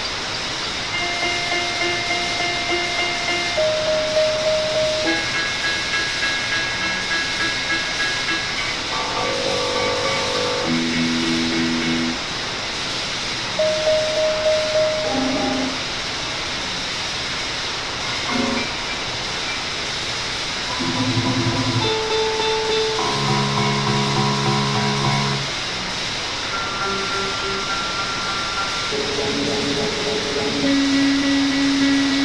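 Experimental electronic drone music: a steady hiss of noise under a string of held synthesizer-like tones, often several at once, each lasting a second or two before shifting to a new pitch.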